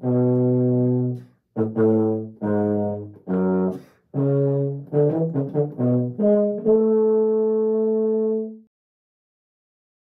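Baritone playing a scale exercise: a phrase of tongued notes, some long and some short, with brief breaths between groups, ending on a long held note that stops shortly before the end.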